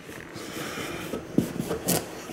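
Kitchen knife sawing into a pumpkin's rind: a soft scraping, then a couple of short knocks near the end.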